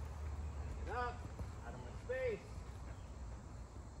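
A person's voice: two short, unclear utterances, about one second and about two seconds in, over a steady low rumble.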